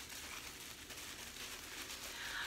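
Faint crinkling rustle from a bath product and its packaging being handled.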